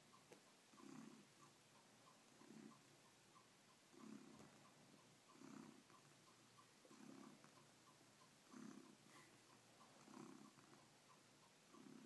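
A domestic cat purring faintly, the purr swelling and fading about every one and a half seconds with its breathing.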